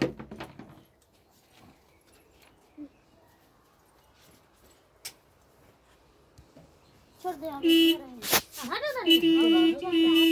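Near silence for about seven seconds, then loud, high-pitched drawn-out vocal sounds with held notes and sliding pitch, broken by a sharp noise about a second after they begin.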